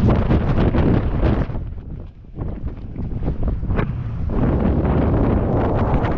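Rushing air buffeting the microphone of a skydiver's GoPro action camera, loud and gusty, dipping briefly about two seconds in.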